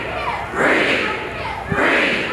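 A large crowd of protesters chanting a short slogan together, outdoors, each chant about a second and a quarter after the last.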